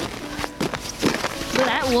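Low background sound with a few light knocks, then a young person's voice starts speaking near the end.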